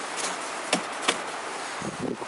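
A few light metallic clicks, three in about a second, from an engine piston and connecting rod being moved by hand in the cylinder block, over a steady hiss.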